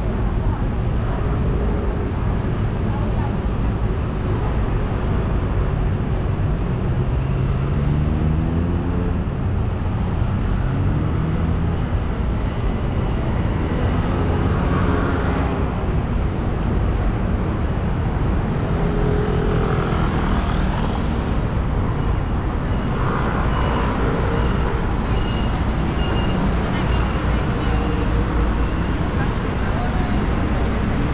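Busy city street traffic: a steady rumble of passing cars and scooters, with one vehicle's engine rising in pitch as it accelerates about a quarter of the way in. Voices of passers-by come and go, and a row of short, high, evenly spaced beeps sounds near the end.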